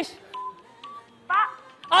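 Quiz-show countdown music: short, steady beeping tones marking the time running out, with a brief voice about a second and a half in.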